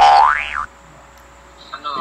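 A cartoon 'boing' sound effect: one loud springy pitch glide that rises and then drops back, cut off suddenly after about two thirds of a second. A voice speaks near the end.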